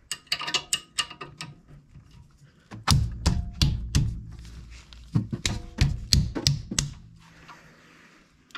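Combination wrench working a rear brake caliper bolt, making metal-on-metal clicks. A quick run of light clicks comes first, then, from about three seconds in, a longer series of sharper clicks with a slight metallic ring.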